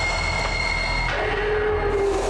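Suspense background score: a held, shrill high tone that gives way about a second in to a lower sustained tone over a steady low drone.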